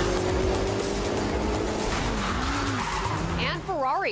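Ferrari SF90 hybrid supercar with a V8 engine driving fast on a race track: engine running under a loud rush of tyre and road noise, its pitch rising and falling about two and a half seconds in. A voice comes in near the end.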